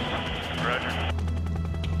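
Background music over the steady low drone of a hovering Coast Guard helicopter.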